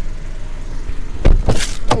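A 2017 Jeep Renegade's rear door being opened: a heavy clunk of the latch a little past halfway, then a brief hiss and a click, over a steady low rumble.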